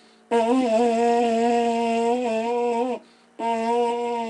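A homemade vuvuzela made from a giant butterbur (rawan buki) stalk with a carrot mouthpiece, blown in long steady blasts on one note. One blast holds for about two and a half seconds, then after a short break another begins near the end.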